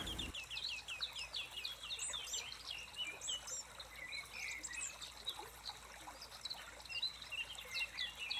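Faint chirping of several small birds: a quick run of short chirps at the start, then scattered calls.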